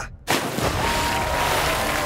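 A splash as a toy figure drops into water, starting suddenly about a quarter-second in and running on as steady churning water.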